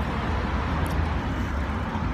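Steady street traffic noise: a low, even rumble of cars on the road.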